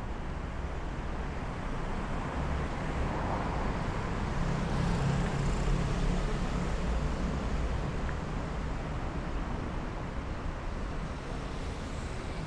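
Road traffic on a busy city street: cars driving past in a steady wash of engine and tyre noise, swelling louder around the middle as a vehicle goes by, then easing off.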